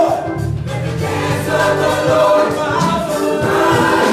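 Gospel choir singing in church with a male lead singer on a microphone, accompanied by keyboard, the voices holding sustained notes.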